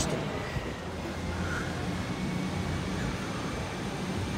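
Steady street background: a low rumble of passing traffic with a steady engine hum underneath.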